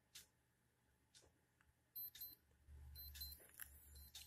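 Faint electronic beeping of a NAKO digital LCD clock's alarm going off at its set time, starting about two seconds in as short high beeps that repeat about once a second.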